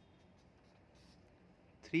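Faint sound of a pen writing on paper on a clipboard, with a voice starting to speak near the end.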